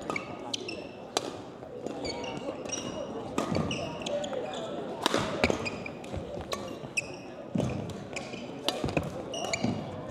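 Badminton rally in a gym: repeated sharp strikes of rackets on the shuttlecock, among short high squeaks of court shoes on the floor, over a murmur of voices in the hall.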